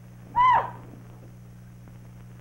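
A man's short, high hooting cry in imitation of an animal, a single call that rises and falls once, about half a second in.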